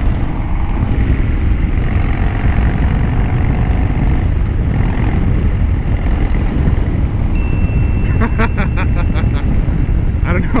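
Harley-Davidson Dyna Low Rider's V-twin engine running at cruising speed, heard under a heavy, steady rumble of wind on the microphone. A thin steady high tone comes in near the end.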